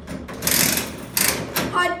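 Mechanical rattling of a coin-operated bouncy-ball vending machine being worked, in two rough bursts of under a second each, followed by a short spoken 'uh' near the end.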